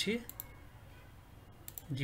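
Two sharp computer mouse clicks about a second and a half apart, each a quick double tick.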